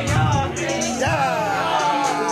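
Music: a hip-hop track with a deep bass pulse and regular hi-hats, and a sung vocal line gliding up and down over it.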